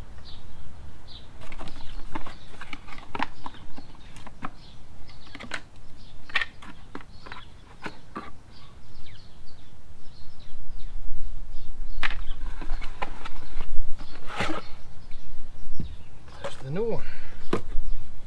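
Irregular clicks and knocks of hand tools and metal parts being handled while a motorcycle battery is swapped, with faint bird chirps in the background.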